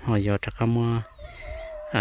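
Rooster crowing faintly: one drawn-out, steady note in the second half, after a man's brief words.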